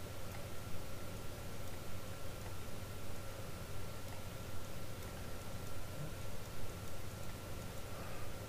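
Room tone: a steady low hum and even hiss with a faint steady high whine, broken by a few faint ticks.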